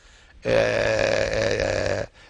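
A man's voice holding one long, steady 'aaah' hesitation sound for about a second and a half, starting about half a second in.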